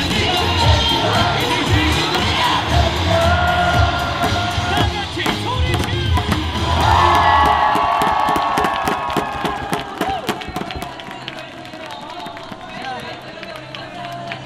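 A cheer song with a heavy bass beat plays over a stadium crowd cheering. The music cuts off about seven and a half seconds in, leaving the crowd cheering and shouting with many sharp claps and bangs of thundersticks, then settling down.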